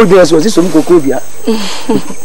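Speech only: a voice talking over a faint steady hiss.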